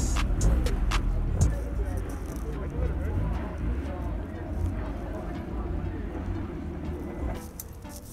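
Car meet ambience: indistinct voices over a steady low rumble, growing somewhat quieter toward the end.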